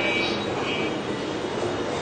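Steady background noise, an even hiss-like rush with a faint low hum, and brief faint high tones near the start.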